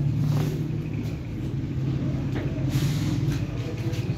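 A steady low mechanical drone from an engine or motor.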